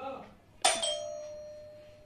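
A doorbell dings once about half a second in, its ringing tone fading away over about a second and a half: someone has arrived at the door.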